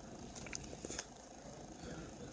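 Faint handling noise of a phone held against clothing: a low rumble with a few soft clicks and rustles about half a second to a second in.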